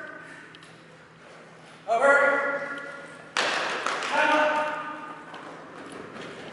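A man calls two long, drawn-out shouted cues to a dog running an agility course, each held on one pitch for about a second. Between the calls comes a sudden sharp thud with a short ring in the large hall.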